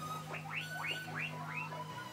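Guinea pig squeaking: a quick run of about six short, rising squeals (wheeks), over steady background music.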